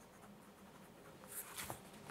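Faint scratching of a pen writing on paper in a quiet room, with a couple of soft clicks near the end.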